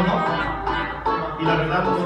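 Acoustic guitar strummed in a steady rhythm, played live.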